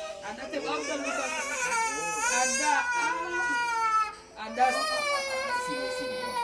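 A small child crying in long, high wails, breaking off briefly about four seconds in.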